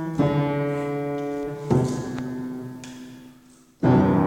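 Piano playing slow, held chords: one struck just after the start, another about halfway through that fades away almost to silence, then a loud new chord right at the end.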